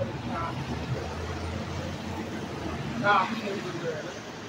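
A man shouting from some distance, with two short outbursts: a faint one about half a second in and a louder one about three seconds in. Underneath is steady street noise, with a low traffic engine rumble that fades out near the three-second mark.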